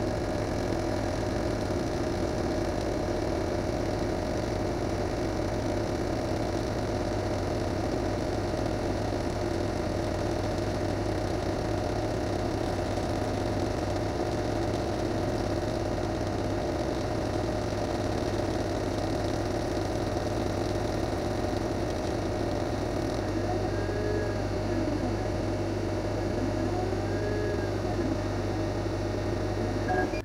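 A 50 W CO2 laser cutter running a job in MDF: a steady hum and whir of the machine and its fume extractor. Near the end, faint rising-and-falling whines come in as the motors drive the head around curves.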